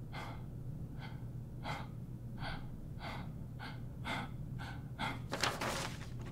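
A man breathing heavily in quick, even puffs, about two to three breaths a second, louder near the end, over a low steady hum.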